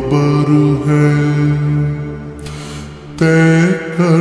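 A voice holding long, drawn-out sung notes of an Urdu naat, slowed down and heavy with reverb. It dips about two seconds in, and a louder new note comes in about three seconds in.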